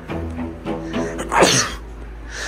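A person's short, sharp exclamation of "ay!" about halfway through, falling in pitch, over background music with steady held notes.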